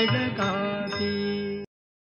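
The closing bars of a Marathi devotional song: a last bending sung phrase fades over held accompaniment notes, and the recording cuts off abruptly about one and a half seconds in.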